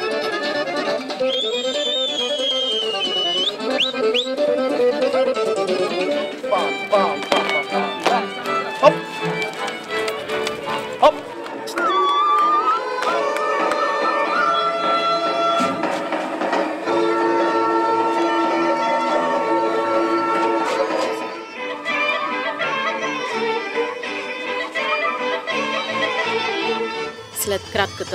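Traditional folk dance music led by fiddle and accordion. The music changes abruptly several times, as separate pieces are cut together.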